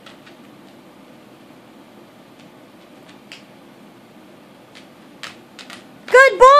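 A dog's claws clicking a few times on a tile floor, the clicks sparse and light and bunching together near the end, over a steady low room hum.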